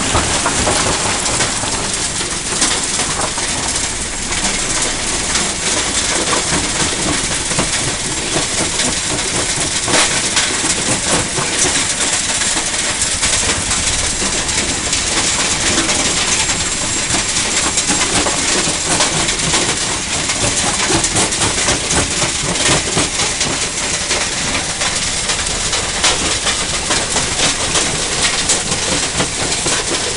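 Belt-driven jaw crusher running loaded with rock, a continuous machine din over dense, irregular knocks and cracks of stone being broken in its jaws.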